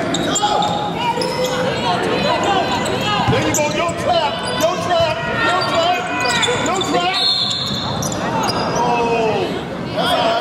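Basketball game on an indoor hardwood court: the ball bouncing as it is dribbled, under steady talking and calling from players and spectators, echoing in a large hall.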